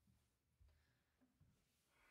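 Near silence in a small room, with a few faint low thuds from the pianist's footsteps as she steps up to the piano bench.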